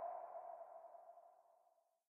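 A single chime ringing out and fading away, gone by nearly two seconds in: the tail of a sound-logo ping marking the end card.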